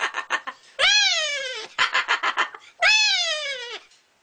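Pet cockatoo giving two drawn-out, cat-like meow calls of about a second each, each rising then falling in pitch, with short clicks in between.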